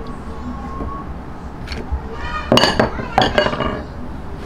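A stainless steel mixing bowl clinking several times in quick succession, about halfway through, each strike ringing briefly, as a container and wire whisk knock against it. Before that there are only soft kitchen noises.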